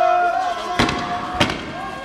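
A held chant of 'Allahu Akbar' by several voices fades out within the first second. Then come two sharp bangs about half a second apart, from tear gas rounds being fired at protesters.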